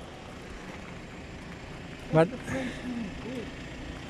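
Steady outdoor background noise with no distinct event, broken by a brief spoken word about two seconds in and faint voices after it.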